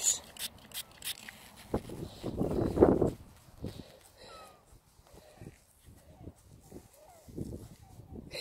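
A nearly empty hand-held spray bottle sputtering out its last squirts of cleaning juice, with a longer noisy spurt about two to three seconds in, followed by soft rubbing and small clicks as a fingertip works the wet coin against a leather glove.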